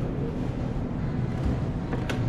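Steady low rumble and hiss of a large supermarket's background noise, with no distinct events.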